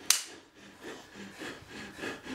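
A film clapperboard's clapstick snapped shut once: a single sharp clack marking the start of a take.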